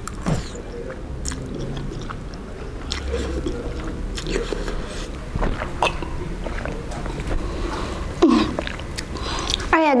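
Close-miked chewing of a mouthful of Indomie instant noodles, with small wet mouth sounds and scattered light clicks.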